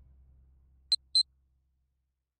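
Low background music fading out, then two short, high-pitched electronic beeps a quarter of a second apart about a second in.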